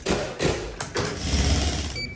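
The push bar (panic bar) on a metal door is pressed with a sudden clack, followed by a few knocks of the latch and door, then a low rumble in the second half.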